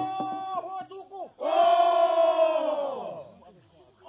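A chorus of Bellonese men chanting. About a second and a half in, they break into a loud, held cry together that slides down in pitch and dies away.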